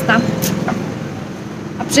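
Steady low background noise of road traffic, with a brief bit of a woman's speech at the start and again near the end.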